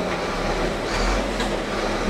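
A large paper poster being unrolled and handled, with soft paper rustles about a second in, over a steady background noise.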